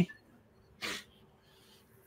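A single short, sharp breath noise from a man near the microphone, a little under a second in; otherwise quiet room tone.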